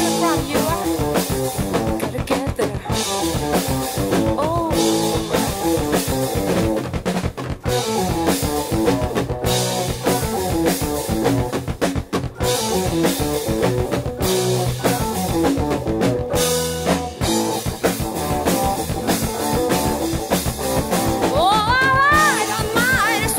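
Rock band playing an instrumental stretch of a funk-rock song: drum kit, electric guitar, electric bass and Hammond organ, broken by a couple of brief stops.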